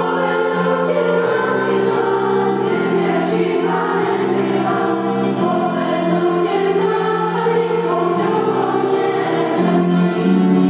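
Mixed school choir of girls and boys singing slow, sustained chords in parts.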